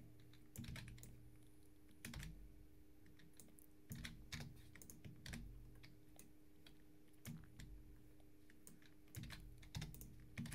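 Faint computer keyboard typing: scattered key presses in small clusters, over a faint steady hum.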